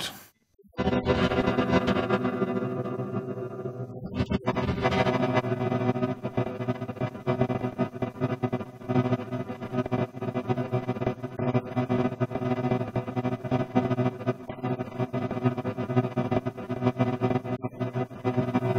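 A guitar chord held frozen by the TipTop Audio Z-DSP's Grain De Folie granular card on its Six Grains Stereo algorithm: a sustained granular chord with a fast, fine flutter of overlapping grains. It comes in after a short silence at the start.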